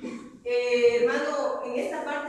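Speech only: a woman's voice preaching, with a short pause about half a second in.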